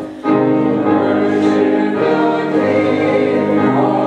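Congregation singing the opening hymn together with piano accompaniment; the voices come in after a brief dip in the sound near the start.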